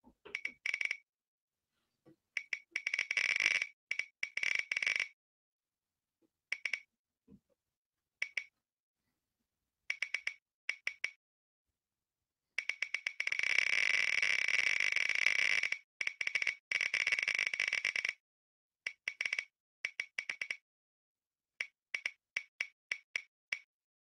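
Tick sound effect of an online spinning-wheel picker: rapid clicks that run together around the middle, then space out into separate ticks near the end as the wheel slows to a stop.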